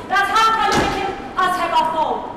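A woman's loud exclaiming voice, broken by a single thump about three-quarters of a second in.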